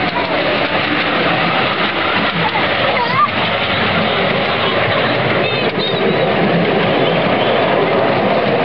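Miniature ride-on train running along its narrow-gauge track through a tunnel and out along a walled cutting, a steady noise of wheels on rails.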